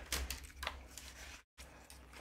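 Pages of a paper instruction booklet being leafed through: soft paper rustling with a couple of sharper page flicks in the first second.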